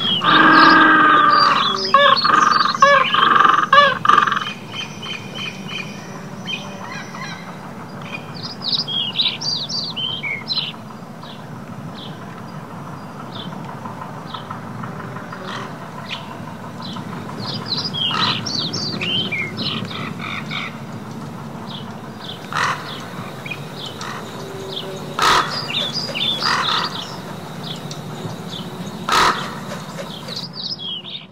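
Small birds chirping, with short high calls scattered throughout over a steady low hum. A louder series of harsh calls fills the first four seconds, and two sharp clicks come near the end.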